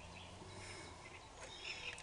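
A quiet pause: a few faint, short bird chirps over a low background hush.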